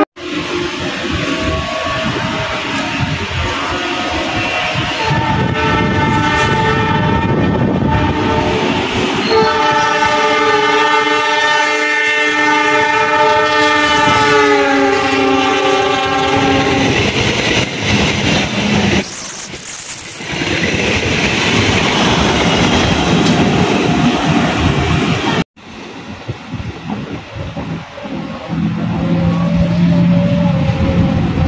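Passenger train's locomotive horn sounding long blasts as the train approaches, the last held for about seven seconds and sliding slightly lower in pitch as the locomotive passes. The rumble and wheel clatter of the coaches going by follow. About 25 seconds in the sound breaks off and a quieter rumble of another approaching train begins.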